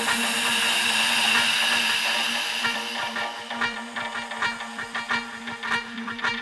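Electronic dance music from a DJ mix, in a section with no drums. A bright whooshing synth swell fades over the first few seconds over a held low synth note. About halfway in, short plucked synth notes start repeating about every three-quarters of a second.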